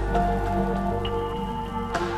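Lofi hip hop music: sustained keyboard chords over a deep bass, a new high note entering about a second in, with a steady soft hiss of noise underneath.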